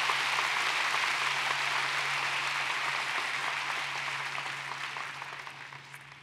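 Large arena crowd of graduates applauding, a sustained round of clapping that gradually dies down over the last couple of seconds.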